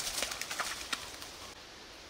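Rustling and irregular light footfalls in forest undergrowth as a dog runs past through ferns. The sound drops to a faint steady hiss about a second and a half in.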